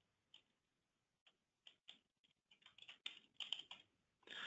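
Faint typing on a computer keyboard: a few scattered keystrokes at first, then a quicker run of keys in the second half.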